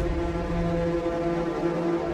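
Background score of a TV drama: a low, steady synth drone with several held tones and no beat.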